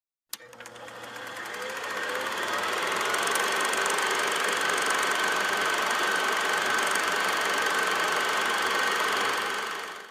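Film projector sound effect: a click at the start, then a rapid mechanical clatter and whir that builds over about two seconds, runs steadily, and fades near the end.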